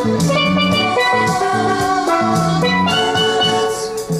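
Steel drum (steelpan) playing a melody in quick, ringing notes.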